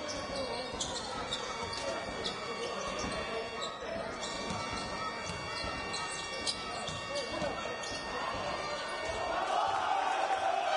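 A basketball being dribbled on a hardwood court during live play, with irregular bounces over a steady murmur of voices echoing in the sports hall. The voices swell near the end.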